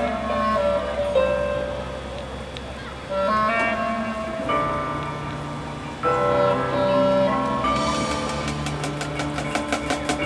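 Marching band playing: the winds hold sustained chords, with new chords coming in about three and six seconds in. Near the end, a quick run of repeated percussion strikes begins.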